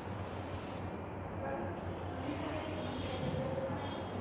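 Chalk drawn in long strokes across a blackboard, ruling lines: two scratchy hissing strokes about a second long, one at the start and one about halfway through, over a steady low hum.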